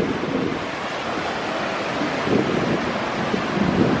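Ocean surf breaking on a sandy beach, a steady rush of waves with wind buffeting the microphone.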